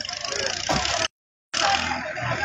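Noisy outdoor background with scattered voices of a gathered crowd. About a second in, the sound drops out completely for roughly half a second and then resumes, where two recordings are spliced together.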